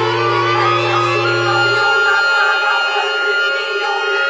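A women's choir and a chamber ensemble of strings and clarinets perform contemporary classical music together, holding a dense sustained chord. A high held note comes in about a second in, and a low held note stops about halfway through.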